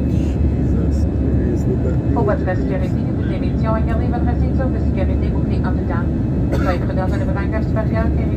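Jet airliner cabin noise in flight: the turbofan engines and airflow make a steady low rumble. A voice talks over it from about two seconds in.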